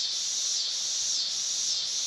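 Steady high-pitched insect chorus on a summer lawn, swelling and fading a little under twice a second.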